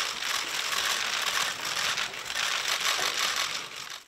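Many press camera shutters clicking rapidly at a photo call, a dense, overlapping clatter that fades away at the very end.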